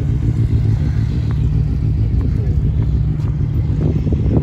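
Motorcycle engine running at low revs, a steady low rumble.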